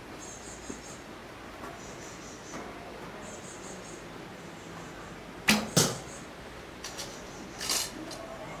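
A wooden longbow shot: a sharp snap as the bowstring is released, then a second sharp crack about a third of a second later as the arrow strikes. A few small clicks and a louder short rustle of handling the bow follow near the end.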